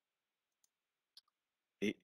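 Near silence broken by two short, faint clicks about half a second apart, then a man's voice starting just before the end.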